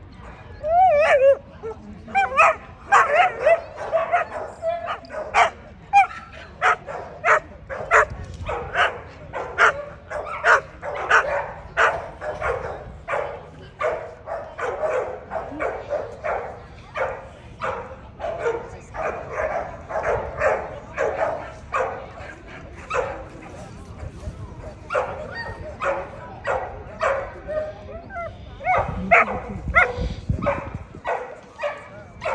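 American Pit Bull Terrier barking over and over, about two barks a second, with a whining yelp near the start and again near the end.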